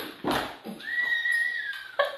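A dog gives one long high whine of about a second, steady and then dipping slightly at the end. A couple of short scuffling sounds come just before it.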